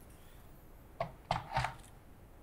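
Two or three short knocks and clicks about a second in, from the metal parts of a monitor stand being handled and fitted together.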